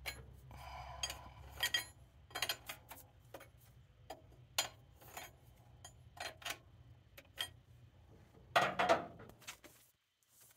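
Scattered light metallic clicks and clinks of tools and parts being handled while working on the engine, with a louder scrape or rustle near the end.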